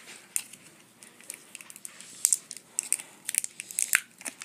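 Plastic wrapping on a Grossery Gang blind-pack can crinkling as it is handled: scattered small crackles, thickening into quick bunches about two seconds in and again near the end.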